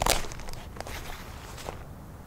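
A raccoon jostling a plastic-wrapped foam-board feeder and stepping on leaf litter: a loud crinkle of plastic right at the start, then scattered crackles and rustles that die away after about a second and a half.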